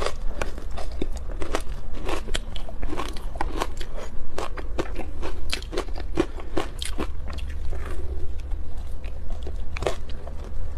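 Refrozen ice being bitten and chewed: rapid, irregular crunching and crackling, several sharp cracks a second, over a steady low hum.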